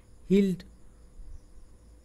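A voice says one short word, then pauses; under it a faint, steady, high-pitched whine runs on.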